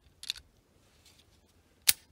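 Brief handling noises: a light rustling click about a quarter second in, then one sharp click near the end.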